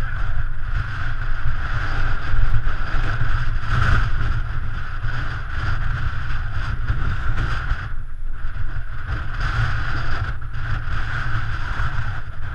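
Wind rushing over the microphone of a camera riding on a moving bicycle: a loud, steady low rumble with a hiss above it, easing briefly about eight seconds in.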